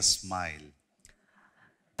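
A man's voice through a microphone trails off with a falling pitch in the first second, followed by a near-silent pause broken by a couple of faint clicks.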